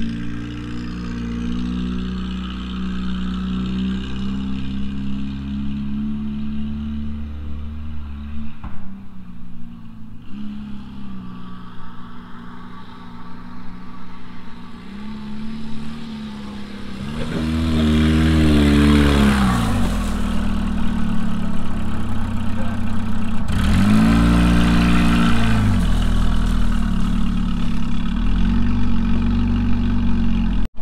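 Car engine revving up and down as the car is driven around a dirt track. It grows louder about halfway through as the car comes closer, with the hiss of tyres on dirt over the engine during the nearest passes.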